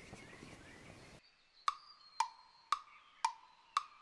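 A steady hiss from the covered pan with faint birdsong behind it, cut off about a second in. Then a wood-block tick sound effect, about two knocks a second, each with a short ringing tone, counting off the cooking time.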